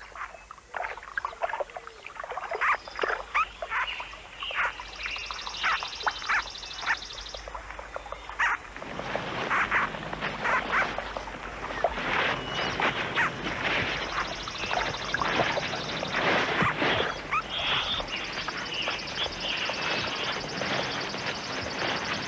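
Rapid, sharp squeaks and squeals of small animals fighting as young mink set upon a water vole, with rustling through vegetation. The calls are sparse at first, then come thick and louder from about nine seconds in as the struggle intensifies.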